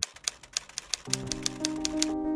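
Typewriter clacks as a sound effect: a quick, irregular run of sharp key clicks. Soft background music comes in about a second in.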